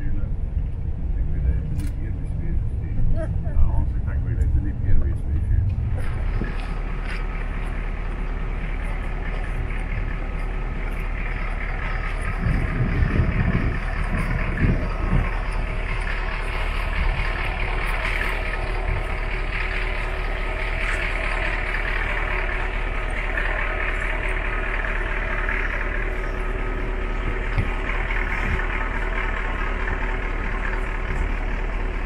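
Tour coach engine and road noise, a low uneven rumble as heard from inside the moving coach. About six seconds in, it changes abruptly to a steadier, brighter engine noise with voices in the background.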